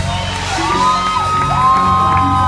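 Live band music in a hall, with long held notes coming in about half a second in, over which the crowd whoops and cheers.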